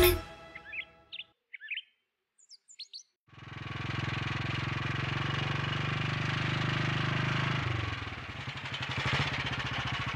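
A few short bird chirps, then a motorcycle engine running steadily as it approaches. About eight seconds in it drops to a slower, quieter beat as the bike slows and pulls up.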